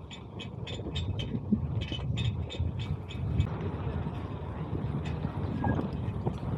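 Wind rumble on a bike-mounted camera's microphone and tyre noise on asphalt while cycling, with a light, quick ticking during the first couple of seconds.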